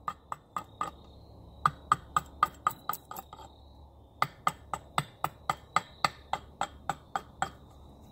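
Hatchet chopping down the side of an Osage orange stave to rough out an axe-handle blank: quick, sharp strikes of the blade into the hard wood, about four a second, in three runs with short pauses between.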